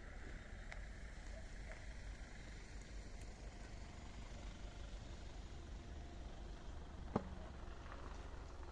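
Steady low outdoor rumble with no speech, and one short sharp click about seven seconds in.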